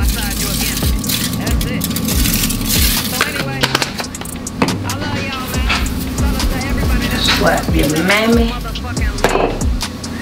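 Background music with a deep bassline that steps between notes, with a voice in the music during the second half.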